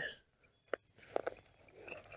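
A few faint clicks as the winch cable's hook is worked through a tight hole in the megatree topper: one short click, then two close together a moment later.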